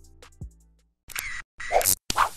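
The hip-hop track's last bass note dies away in the first half second. After a brief gap, an intro logo sound effect starts: two short bursts of clicks and swishes like a camera shutter.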